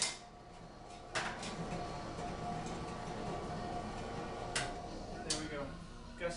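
Steel plates being handled: four sharp metallic clanks, one at the start, one about a second in and two near the end. The second clank leaves a steady ringing tone for about three seconds, heard over a constant background hum.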